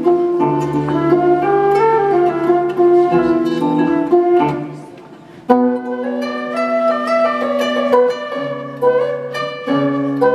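Flute and harp duet: a flute melody over plucked harp notes. The music drops to a brief softer moment just before the middle, then both come back in together about five and a half seconds in.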